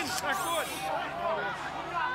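Speech only: a man's voice talking, quieter than the surrounding commentary, over a faint crowd murmur.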